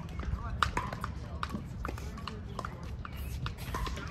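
Pickleball paddles hitting a hollow plastic ball, a string of sharp, irregular pops from the rally and the neighbouring court, with voices and a low steady rumble behind.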